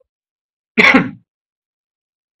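A man's single short throat-clearing cough, about a second in.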